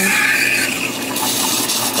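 Espresso machine steam wand hissing into milk in a stainless steel pitcher as the milk is steamed. A high whistling squeal rides on the hiss and fades out under a second in, and the hiss turns brighter about a second in.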